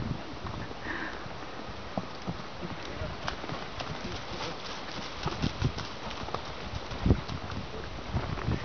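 Hoofbeats of a ridden horse moving around a dirt round pen: a quick, uneven run of soft hoof strikes, with one louder strike about seven seconds in.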